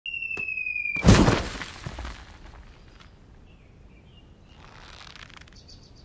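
An FPV quadcopter's brushless motors whine at a steady high pitch that sags slightly. About a second in the drone hits the ground in a loud crash that dies away over about a second. Faint bird chirps follow.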